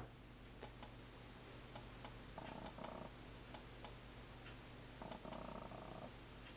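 Faint room tone: a steady low hum with light ticks at uneven intervals, and two short faint tones in the middle and near the end.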